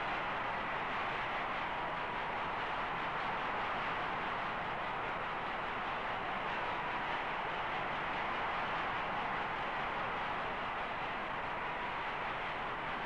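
Steady crowd noise from a boxing arena, an even wash of sound without distinct shouts or blows.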